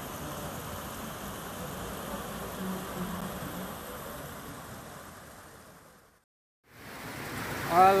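Water from a shallow rocky stream running over small cascades, a steady rushing hiss that fades out about six seconds in.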